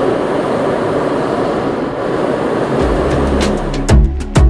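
Hot air balloon propane burner (Ignis) firing: a loud, steady roar of burning gas for about three seconds. Music with a deep bass beat comes in near the end.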